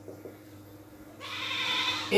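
Marker tip squeaking on a whiteboard during writing. The sustained, high squeal starts a little over a second in, after a few faint taps.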